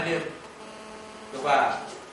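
A steady electrical hum runs under a man's voice. The voice trails off at the start and comes back briefly and loudly about one and a half seconds in.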